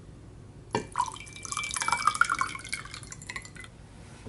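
Water poured into a clear glass tumbler. It starts sharply under a second in and fills the glass for about three seconds before stopping.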